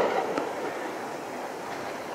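Steady rushing noise of air and tyres as a bicycle rolls along a paved road.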